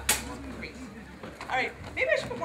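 Low, scattered talk from a group of people, with a single sharp click or knock just after the start.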